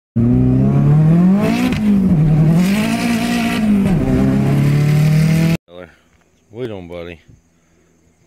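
Car engine heard from inside the cabin while driving, its pitch rising and falling as it accelerates and eases off. It cuts off abruptly about five and a half seconds in, followed by a few brief voice sounds.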